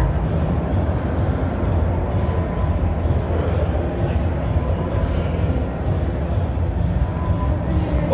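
Steady low rumble of a large exhibition hall's background noise, with faint distant voices mixed in.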